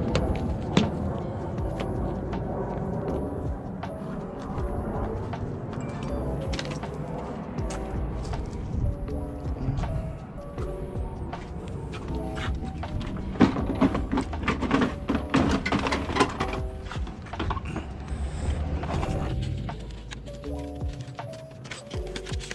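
Background music with a steady run of notes over the work footage.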